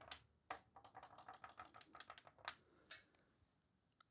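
Faint, rapid clicking of marbles in the Marble Machine X's marble divider as they drop through the channels during a test run. The clicks come in a quick irregular series, then two last ones, and stop about three seconds in.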